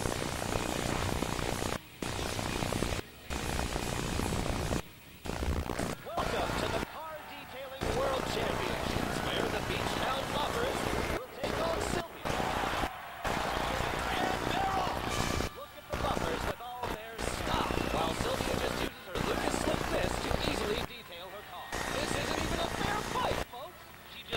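Television commercial soundtrack: music and voices, broken by many sharp edits with brief silent gaps.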